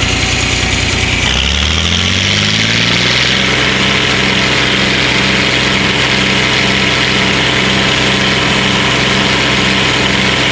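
Tractor diesel engine speeding up a little over a second in, then running steady at the higher speed with a regular beat about twice a second.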